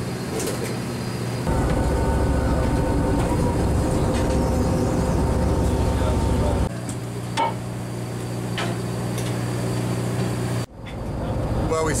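Steady low engine hum aboard a large fishing boat, with a louder rushing rumble laid over it for several seconds from about a second and a half in; the sound changes abruptly at each change of shot.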